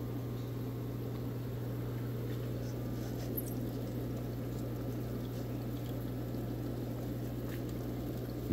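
Steady bubbling and splashing of water from air-driven sponge filters aerating a rack of aquariums, with a constant low hum underneath.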